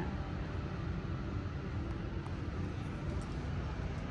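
Steady low rumble with a faint hiss and no distinct events: the background noise of a large store, picked up by a handheld camera moving down an aisle.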